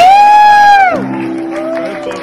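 A single high whoop held on one note for about a second, dropping away at the end, over a cheering, clapping audience. Quieter music with steady held notes comes in after it.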